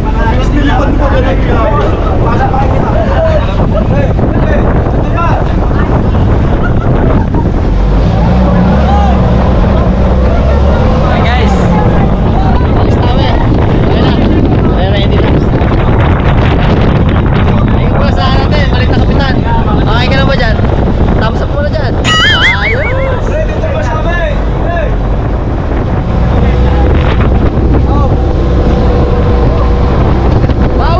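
Outrigger boat's engine running steadily under wind buffeting the microphone, with passengers' voices and laughter over it.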